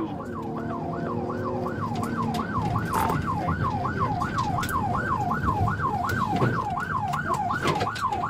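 Police car siren in yelp mode, a fast rising and falling wail repeating about three and a half times a second, over the road and engine noise of the patrol car in pursuit.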